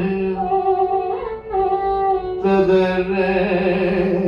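Carnatic music in raga Sankarabharanam: a male voice with instrumental accompaniment holds long notes and slides between them, the melody moving to a new pitch about a second in and again past the halfway mark.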